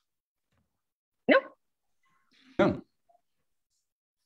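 Two brief single-syllable vocal sounds, about a second and a half apart, with near silence around them.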